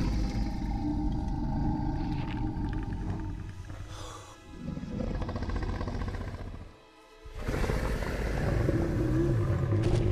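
Dramatic film score mixed with the low growls of a large dinosaur, the film's Indominus rex, as it looms over the gyrosphere. The sound drops away twice, briefly, about halfway through and again a few seconds later.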